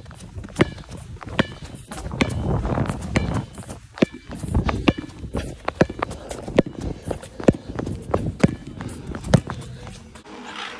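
A basketball being dribbled on tarmac: sharp bounces, roughly one a second and unevenly spaced, each with a brief hollow ping from the ball.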